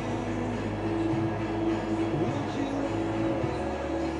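Vehicle interior while driving: steady engine and road hum, with music playing on the car radio over it.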